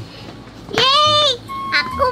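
A high-pitched voice draws out two long syllables, the first about two thirds of a second in and the second near the end.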